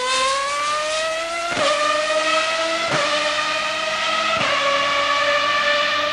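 High-revving race car engine accelerating hard through the gears: its pitch climbs steadily and drops sharply at three upshifts, about a second and a half, three seconds and four and a half seconds in.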